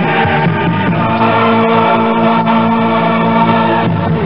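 Music with a choir singing over instrumental backing, building to a long held chord that breaks off just before the end.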